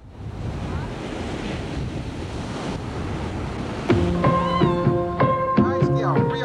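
Ocean waves breaking on a beach, a steady rushing wash with wind on the microphone, which starts abruptly. About four seconds in, music comes in with held, stepping notes over the surf.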